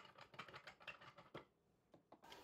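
Faint light clicking of the Dupray Neat steam cleaner's plastic boiler cap being unscrewed, the ticks stopping about a second and a half in.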